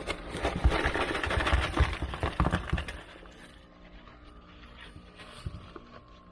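Dug-up scrap metal from metal detecting (bits of aluminium, nails, a shotgun shell) clattering and rattling as it is shaken out of a cloth finds pouch onto a rubber car-boot mat, for about three seconds; then quieter, with a faint rustle and one small click.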